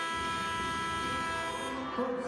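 Arena game horn sounding one long, steady blast that fades out near the end, the signal that a timeout is over.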